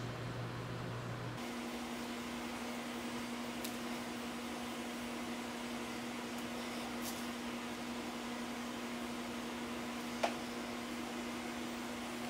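Steady low electrical hum with faint background hiss. The hum's pitch steps up just over a second in. A few faint ticks sound through it, the clearest one late on.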